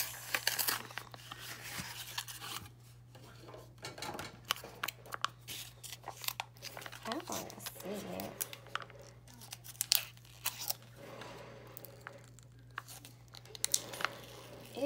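Cardboard sleeve and plastic tray of a packaged toddler meal being handled and torn open: irregular crinkling and tearing broken by sharp clicks.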